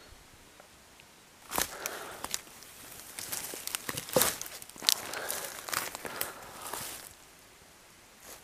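Dry leaf litter and twigs on a forest floor crackling and rustling under a person's steps and movements, in irregular bursts from about a second and a half in until about seven seconds in.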